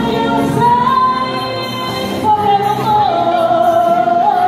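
A woman singing over musical accompaniment, holding long notes with a wavering pitch.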